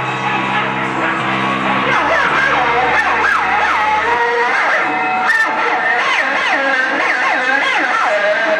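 Live rock band playing. Held low notes fade out over the first few seconds and give way to wavering, sliding high notes that bend up and down.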